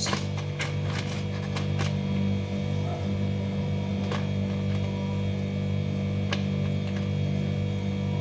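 Steady low hum, with a few light taps in the first two seconds and again about four and six seconds in, as diced vegetables are dropped by hand into a plastic container.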